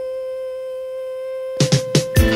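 Disco-pop song recording on a single long held note, steady in pitch. Near the end, a run of drum hits breaks in and starts the dance beat.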